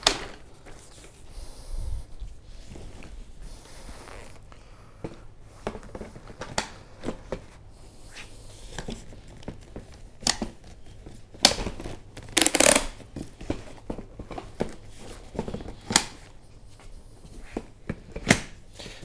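Tutis Sky stroller being unfolded and its seat unit handled: scattered clicks of the frame and latches with rustling fabric, the loudest clatter about twelve seconds in.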